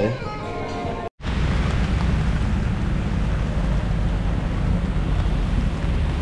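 Background music for about a second, then it cuts off abruptly. After the cut comes a steady wash of outdoor noise on a rainy street: wind rumbling on the microphone over rain and road traffic.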